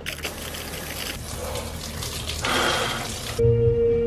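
Water rushing from an outdoor cold shower opened with a brass ball valve. It gets brighter about two and a half seconds in and cuts off suddenly about three and a half seconds in, when music starts.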